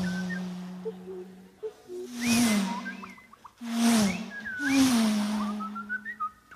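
Voice artist's mouth-made sound effects: a low hummed drone that drops in pitch with each of three breathy whooshes, about two, four and five seconds in, imitating vehicles rushing past, with short whistled chirps over it.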